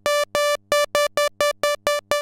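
Roland SH-101 monophonic analog synthesizer on its sawtooth oscillator, repeating one high note in short, evenly spaced staccato pulses, about five or six a second.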